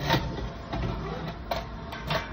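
A few short knocks and rubbing sounds from movement right at the microphone, over a steady low rumble.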